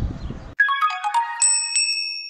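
Short electronic chime jingle: a quick run of bright, bell-like notes ending in high, held ringing tones. Before it, outdoor background noise cuts off abruptly about half a second in.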